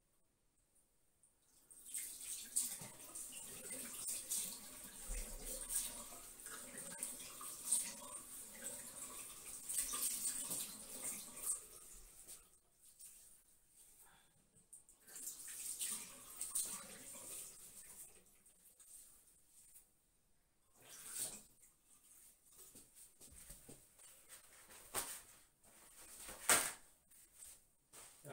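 Water from a bathroom sink tap running and splashing as a face is washed by hand. It starts about two seconds in, runs steadily for about ten seconds, then comes in separate splashes with short pauses.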